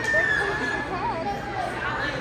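Several voices shouting in a gymnasium, with a long, high, held yell near the start and more rising-and-falling calls about a second in.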